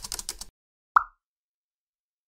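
A quick run of dry clicks lasting about half a second, then, about a second in, a single short, bright pop sound effect.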